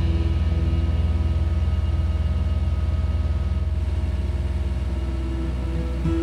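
Bobcat mini excavator's diesel engine idling steadily, a low even rumble.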